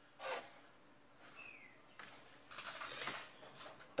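Mechanical pencil and plastic ruler scraping and sliding on paper in a few short, scratchy strokes, the loudest about a quarter second in. A brief falling squeak comes about a second and a half in.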